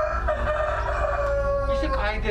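Rooster crowing: one long held call lasting nearly two seconds, its pitch sagging slightly toward the end.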